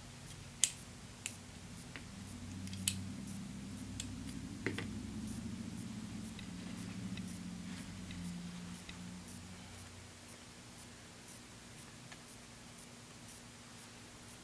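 A few sharp metallic clicks as a pair of hair-cutting shears is put back together and handled, over a faint low hum that fades out about two-thirds of the way through.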